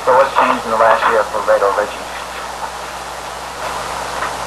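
Indistinct talking for about two seconds, then a steady hiss of tape or room noise under the recording.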